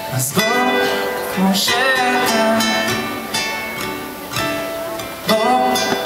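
Ukulele strumming a song's chords live, with sharp louder strokes a little after the start, near two seconds in and again near the end.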